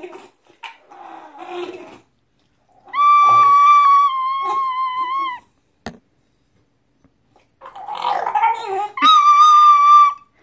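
A recorder playing two long, steady held notes, the first about three seconds in and the second at the end. Between them an English bulldog whimpers and howls, a rough wavering cry in the first two seconds and again just before the second note.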